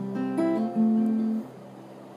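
Cutaway acoustic guitar playing a short strummed chord passage between sung lines. The notes change over the first second and a half, then drop to a quiet ring.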